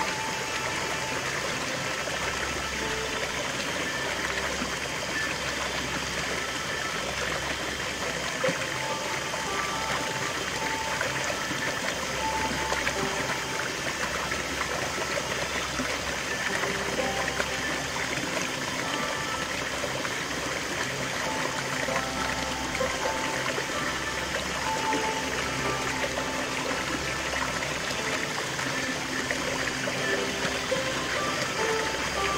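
Small waterfall splashing steadily over rocks into a shallow stream pool, mixed with slow background music of held notes over a low bass swell that comes and goes every few seconds.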